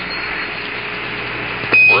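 Apollo 14 air-to-ground radio channel open between transmissions: a steady static hiss with faint hum, then near the end a short, loud, high beep, a Quindar tone marking a transmitter key.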